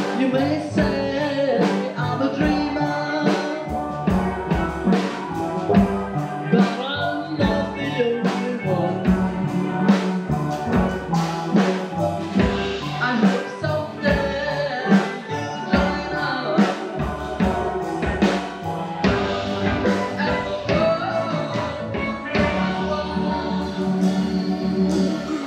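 A steel drum orchestra playing a song on many steel pans, the notes struck with mallets, over a steady drum beat.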